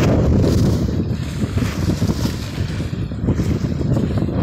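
Wind buffeting the microphone: a loud, uneven low rumble that rises and falls in gusts.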